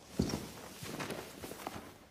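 Footsteps on a carpeted floor with a sheet dragging and rustling across it. A soft thud comes just after the start, as a shoe steps down on the sheet.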